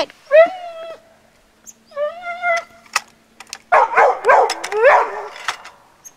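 A dog whining and howling in two long high calls, then breaking into a quick run of yips and barks in the second half.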